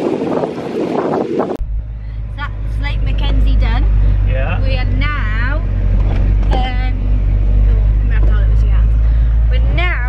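Inside a moving 4x4's cabin: a steady low engine and road drone. It comes in abruptly about a second and a half in, cutting off a short stretch of outdoor wind noise.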